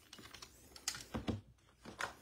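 A few light clicks and taps from trading-card packs and boxes being picked up and set down on a tabletop by hand.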